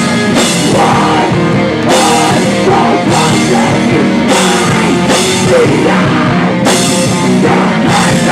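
Live heavy metal band playing loud: distorted electric guitar and bass over a full drum kit, with a vocalist singing into a handheld microphone.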